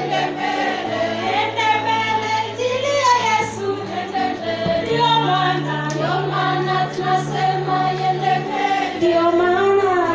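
A group of voices singing together over steady held low notes that change every second or two.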